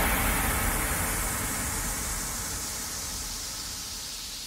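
A steady rushing noise that fades away gradually, its hiss slowly dulling as it dies down.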